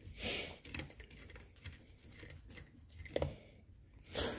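Faint handling sounds of gloved hands working a small hex screwdriver in the case screws of an SWR meter: soft rustles and scrapes of the glove, with a sharp click a little after three seconds.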